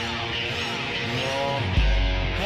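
Instrumental intro of a song: melodic lines that bend in pitch, with a deep bass note coming in near the end.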